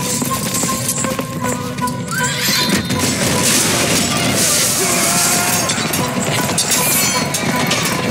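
Cavalry horses galloping with clattering hooves and neighing, mixed with a music score; the din grows louder about two and a half seconds in.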